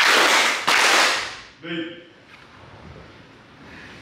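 A group kneeling before a Shinto shrine clapping their hands twice in unison, the ritual kashiwade claps, each one loud and ringing in the wooden hall. A short spoken word follows.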